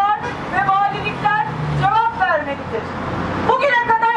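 A woman speaking through a megaphone in short phrases with pauses, over a low steady hum.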